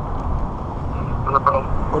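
Steady low rumble of road traffic outdoors, with a brief faint voice about a second and a half in.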